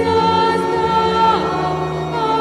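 A choir singing a slow communion hymn in long held notes, moving to a new note about one and a half seconds in.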